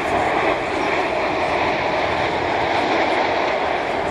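A steady, loud roar with a faint hum running through it, unchanging throughout.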